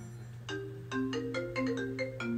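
Smartphone ringing with an incoming call: a repeating marimba-like ringtone melody of short bright notes, a few a second.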